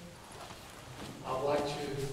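A man's voice singing in long held notes. It comes in a little past halfway after a quiet pause.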